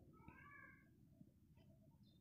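A cat meowing once, faintly, in a short call of under a second, over faint background noise.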